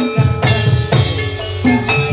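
Live jathilan accompaniment music: drums struck in quick repeated strokes under ringing tuned metal percussion, gamelan-style.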